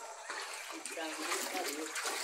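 Floodwater sloshing and splashing lightly, with faint voices in the background about halfway through.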